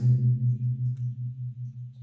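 A low, steady hum pulsing about six or seven times a second, fading slightly.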